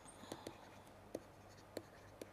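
Faint taps and short scratches of a stylus on a writing tablet as handwriting is written, a few separate strokes.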